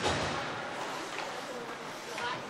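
Ice hockey game sound in a rink: a sharp knock at the very start, then a steady hiss of play with faint distant voices near the end.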